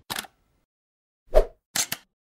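Animated logo-intro sound effects: a brief swish at the start, a loud pop about a second and a half in, then two quick sharp clicks near the end.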